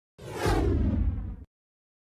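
Whoosh sound effect with a deep rumble under it, the sting of an animated logo intro, sweeping downward and cutting off abruptly about a second and a half in.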